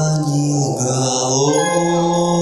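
A man singing into a microphone over musical accompaniment through loudspeakers, holding long, steady notes that step up in pitch.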